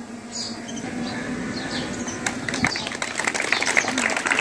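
Scattered hand clapping from an outdoor audience, starting about halfway through as a garland is placed, over a steady low hum and faint bird chirps.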